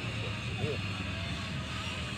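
Motorboat engine droning steadily at a distance, a low even hum.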